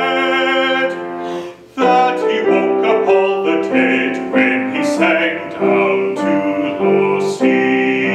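A man's singing voice holding a note with vibrato over piano accompaniment. The note breaks off about a second and a half in, and piano chords carry on.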